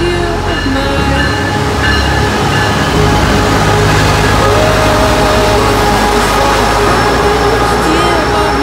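Brightline passenger train led by a Siemens Charger diesel-electric locomotive pulling in alongside the platform, its rumble and rail noise growing louder about three seconds in as the locomotive and coaches pass close by. Background music plays over it.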